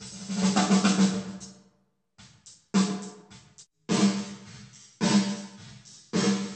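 Recorded snare drum track played through the UAD Lexicon 224 digital reverb plug-in: a quick cluster of snare hits like a short fill at the start, then single hits about a second apart, each trailing off in a reverb tail.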